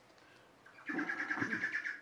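A bird calling once, a rapidly pulsing, warbling call that starts a little under a second in and lasts about a second.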